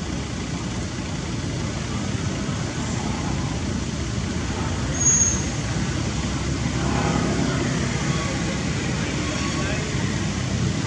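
Steady low rumble of distant road traffic, with faint voices in the background from about seven seconds on and one brief high-pitched squeak about five seconds in.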